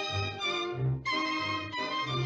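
Orchestral music led by violins, playing sustained notes over a low bass note that recurs about every two-thirds of a second, with a short break about a second in.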